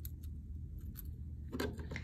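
A few light, sharp clicks of steel chain-nose pliers and small brass jewelry pieces (a jump ring and charm) being handled, over a low steady hum.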